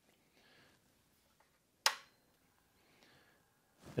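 A single sharp click about two seconds in as the MFJ-4275MV switching power supply is switched on; otherwise near silence.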